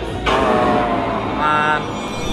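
The game's electronic failure sound: a pitched tone falling slowly in pitch, then a shorter, higher tone, played over background music. It marks that the round has been lost.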